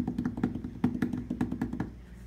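A rapid drumroll of light, even strikes, about ten a second, over a low steady tone, stopping just before the end. It is a suspense roll ahead of announcing a vote's winner.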